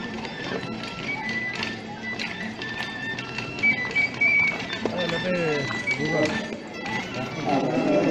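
Live band music at a street festival, with held high melody notes and a deep bass line, and a few sharp clicks. People in the crowd talk over it about five seconds in and again near the end.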